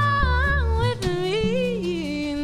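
A woman's voice singing a wordless, gliding melody while an upright bass plays low notes underneath.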